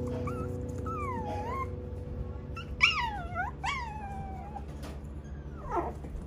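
West Highland White Terrier puppies whining and yipping: a series of high-pitched whimpers that slide up and down in pitch, with two louder yips about three seconds in, each dropping in pitch, and a short falling whine near the end.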